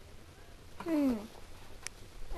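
A short vocal call about a second in, its pitch falling.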